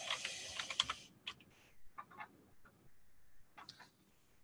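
Faint typing on a computer keyboard: a quick run of keystrokes in the first second, then scattered single key clicks.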